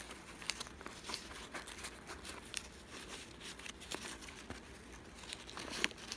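Newspaper crinkling as fingers scrunch and fold glued paper petals up toward the centre of a paper flower, a run of small irregular crackles.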